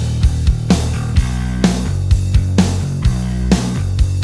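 Drums and bass guitar of a modern country-rock song playing together, a kick-and-snare beat with regular hits about twice a second over a steady bass line. The drum bus is heard dry, its drive plugin still bypassed.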